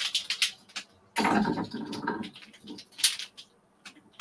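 Takadai tama (weighted braiding bobbins) clicking and knocking together as they are lifted and moved across the stand, with a longer, louder clatter about a second in and a few more clicks near the end.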